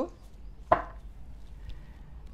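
A single sharp tap of tarot cards being handled as a card is drawn from the bottom of the deck.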